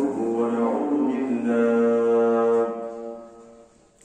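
A man's voice chanting in long, drawn-out melodic notes through a microphone, one note held for over a second before the voice fades away about three seconds in.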